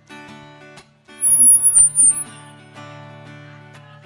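Acoustic guitar played live, chords ringing with changing notes and a short break about a second in. Just after the break a loud, very high-pitched squeal lasts about a second.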